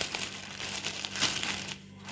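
Clear plastic bag crinkling as hands handle skeins of yarn inside it: a run of irregular crackles that falls quiet shortly before the end.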